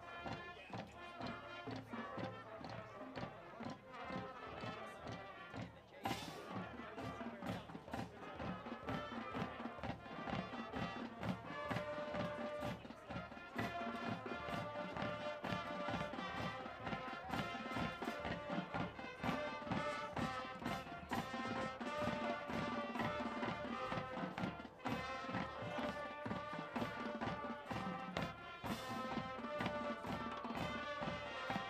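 High school marching band playing a piece: brass and sousaphone over a steady marching drum beat.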